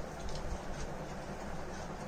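Faint munching and crunching of a fried lentil snack (chatpata dal) eaten straight from plates without hands, in scattered small crunches over a steady low hum.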